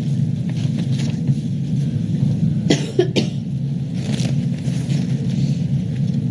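Steady low hum of the meeting room's microphone pickup, with a short cough about three seconds in and a few light paper rustles.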